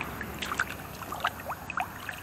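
Lake water trickling and gurgling, with a few small plops, as a largemouth bass is lowered into it by hand and swims off.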